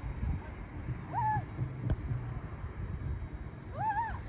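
Two short, high-pitched shouts from players far off across the field, one about a second in and one near the end, over a steady low outdoor rumble, with a single faint click in between.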